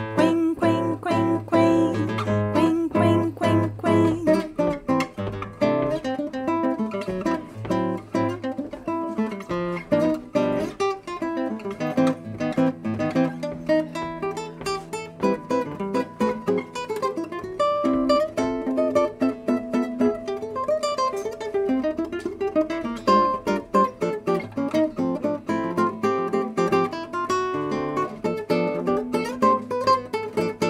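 Nylon-string classical guitar playing a solo bossa nova instrumental break: quick plucked melody notes over chords, with no voice.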